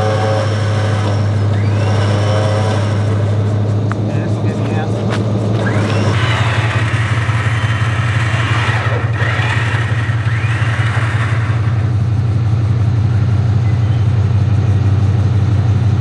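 A Toyota Land Cruiser's V8 engine and its front-mounted winch running as the winch hauls the vehicle out of a ditch. It is a steady low hum that grows heavier about six seconds in, when the pull takes up.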